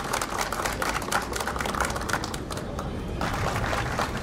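A crowd applauding, many hands clapping at once in a dense, irregular patter.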